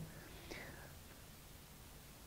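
Near silence: faint room tone in a pause between speech, with one brief faint breath-like hiss about half a second in.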